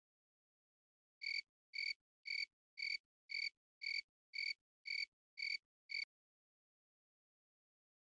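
Dubbed-in cricket-chirp sound effect: ten short, evenly spaced chirps, about two a second, over dead silence, stopping about six seconds in.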